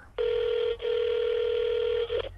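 Telephone ringing tone heard down the phone line: one steady ring of about two seconds with a tiny dropout near the start, sounding thin and band-limited like a call heard through a handset.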